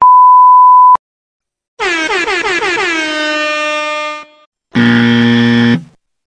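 A run of stock sound effects. First a one-second censor bleep, a single steady beep that cuts off with a click. Then a horn-like pitched tone that slides down and holds for about two seconds. Finally a harsh electric buzzer for about a second.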